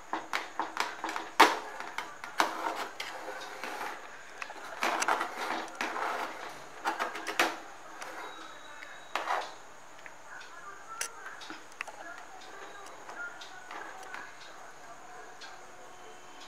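Kitchen knife cutting through soft steamed dhokla, its blade clicking and scraping against the steel pan in a quick run of light knocks, mostly in the first half, with scattered fainter ticks afterwards.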